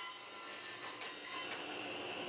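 Table saw ripping a thin strip of pallet wood, the blade giving a steady rasping cut; the strip has split at a weak point between blade and push hand. A little over a second in the sound shifts and a steady high whine comes in.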